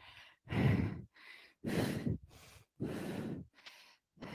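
A woman breathing hard during dumbbell squats: a strong, breathy exhale about once a second, with fainter inhales between.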